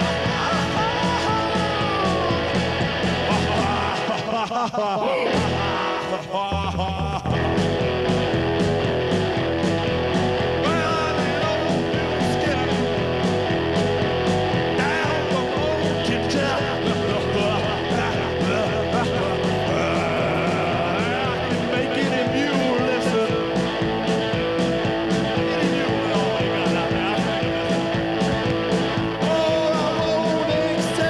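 A rockabilly-punk band playing live, with electric guitar, bass and drums and a man's vocal cries over them. The bass and drums stop briefly about four seconds in and then come back.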